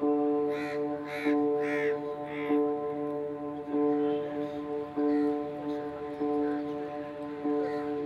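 Four harsh bird calls in quick succession, about two-thirds of a second apart, in the first few seconds, then fainter calls now and then, over background music of sustained notes that pulse about once a second.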